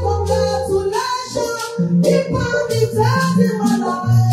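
Women singing a gospel praise chorus into microphones, over a bass line and percussion accompaniment.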